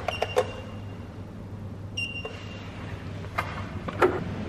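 Fingerprint door-access scanner beeping: a high beep held for under a second as the finger is pressed on, then a second, shorter beep about two seconds in, with a few sharp clicks between.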